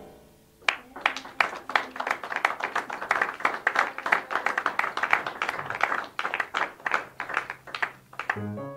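Small audience applauding just after a jazz tune ends, the individual claps distinct, starting about a second in.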